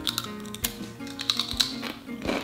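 Ghost pepper potato chips crunching as two people bite and chew them, an irregular run of sharp crisp clicks, over background music.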